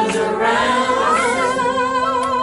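A woman singing, holding one long, wavering note with vibrato from about half a second in, without words.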